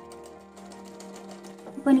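Domestic sewing machine stitching fabric: a fast, even run of clicks that stops near the end. Soft background music with held notes plays under it.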